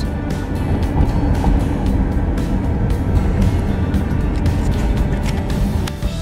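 Steady car road and engine rumble heard inside a moving car, with music playing over it.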